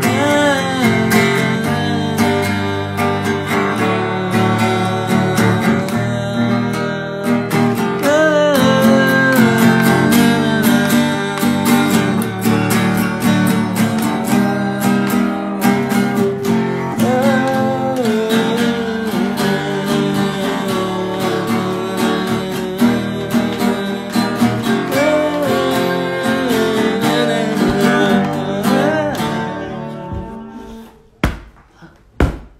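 Acoustic guitar strummed steadily in full chords, with a male voice singing over it in several phrases. The playing stops at the very end.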